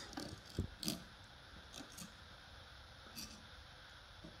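Faint taps and scrapes of a knife and fork on a wooden board as a goat cheese log is sliced. A soft knock comes a little over half a second in, with a few lighter clicks after it.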